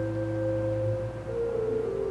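Church organ playing soft, slow sustained chords with a held bass, moving to a new chord about a second and a half in.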